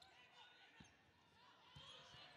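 Faint basketball dribbling on a hardwood court: a few soft low thuds of the ball.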